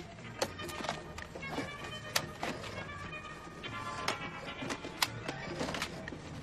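Film background music with a run of short, sharp notes over a soft sustained bed.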